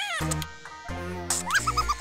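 Cartoon creature squeaks and chirps over a music score: a rising squeal, then a quick run of four high chirps near the end.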